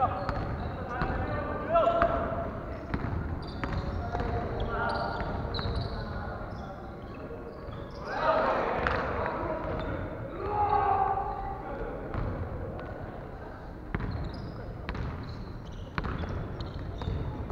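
Players' voices chatting and calling in a large gymnasium, loudest about eight and ten seconds in, with scattered thuds of volleyballs being hit and bouncing on the wooden floor.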